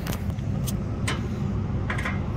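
Steady low machinery hum from rooftop refrigeration equipment running, with a few light clicks and taps.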